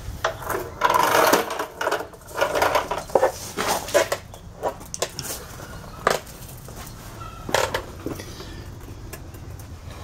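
Irregular scuffing, rustling and a few sharp knocks as a person gets down on a concrete floor and slides under a car, with the camera handled along the way; it settles quieter near the end.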